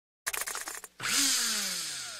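Logo-intro sound effect: a rapid rattle of about a dozen clicks, then, after a brief gap, a louder swoosh with several falling tones that fades away.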